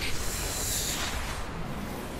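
A hissing rush of noise from the anime episode's sound track, strongest in the first second, over a low rumble.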